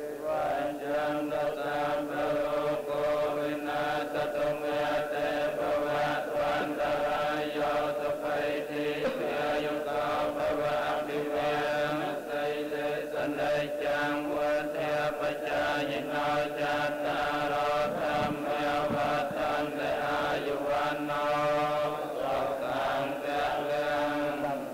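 A large group of Buddhist monks chanting together in unison, a steady sustained drone with an even rhythmic pulse.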